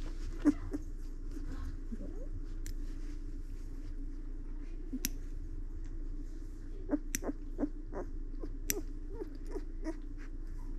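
Small metal fingernail clippers snipping a newborn golden retriever puppy's toenails, giving a handful of sharp little clicks, most of them in the second half. A steady low hum sits underneath.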